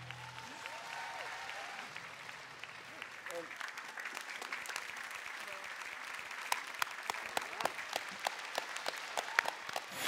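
Studio audience applauding. The last held chord of the backing music stops just after the start, and the clapping grows louder, with sharper individual claps in the second half.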